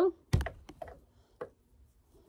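A soft thump about a third of a second in, then three or four light clicks and taps over the next second, close to the microphone.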